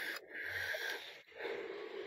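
Faint breathing close to a phone's microphone: a few soft, noisy breaths.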